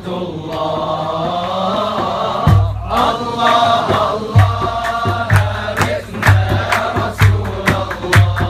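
A group of men chanting a devotional Arabic song in unison. About two and a half seconds in, a low drum beat joins at roughly one beat a second, with sharp hand claps between the beats.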